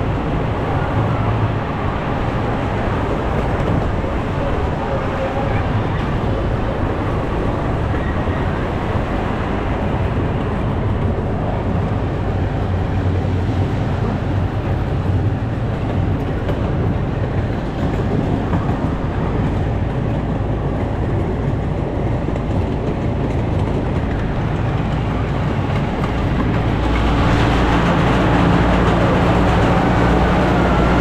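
Miniature steam train running on its track, heard from the riding cars: a steady rumble of wheels on the rails. About three seconds before the end it grows louder and fuller as the train enters a tunnel.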